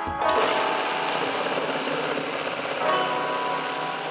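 A power tool starts just after the beginning and runs steadily, with background music playing faintly underneath.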